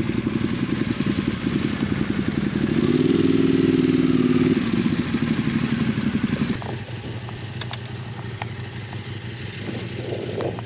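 Ducati Multistrada's twin-cylinder engine running as the bike pulls up alongside at walking pace, loudest about three to four seconds in. It is switched off about six and a half seconds in. A lower, steady engine hum and a few light clicks carry on after it.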